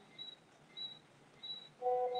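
Faint, regular high-pitched chirps, three of them about two-thirds of a second apart. Near the end a held musical note comes in.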